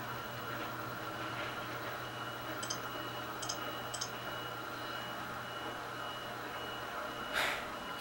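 Quiet room tone: a steady low hum with a faint high whine, three faint short high-pitched blips around the middle, and a brief soft rush of noise near the end.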